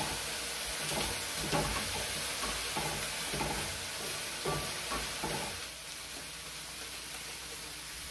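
Chopped onions, red bell pepper and garlic sizzling in olive oil in a pan over a gas flame, with a wooden spoon scraping and stirring through them in short strokes. After about five and a half seconds the stirring stops and the sizzle goes on alone, a little quieter.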